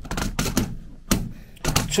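A telescopic antenna pole fitted with a nylon clamp being twisted by hand, giving a few irregular sharp clicks and knocks over two seconds.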